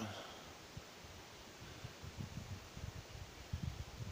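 Faint outdoor background with soft, irregular low rumbles.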